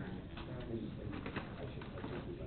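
Indistinct, murmured conversation of several people in a room, with a few light knocks and clicks.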